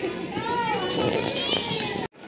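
A young child's high-pitched voice calling out a couple of times, with other voices chattering around it.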